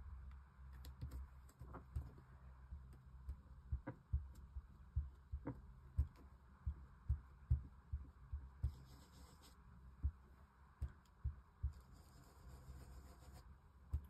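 Sponge dauber being pushed and dabbed onto a paper stencil mask over card stock: a faint run of soft, irregular low thuds with a few sharper taps. Two short stretches of soft hiss come in the second half.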